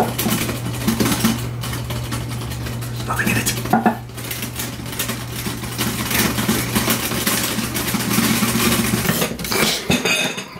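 Royal manual typewriter being typed on: a quick, irregular run of metallic key strikes, over a steady low hum.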